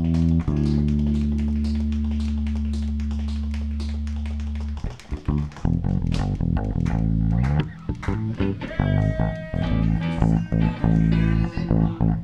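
Electric guitar and bass guitar played through amplifiers: a low chord rings out and slowly fades for about five seconds, then breaks into a quick run of changing notes.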